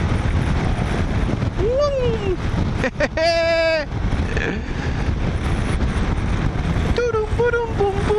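Wind rush and the Kymco AK550 scooter's parallel-twin engine while riding at motorway speed. About three seconds in, a loud steady tone lasts under a second.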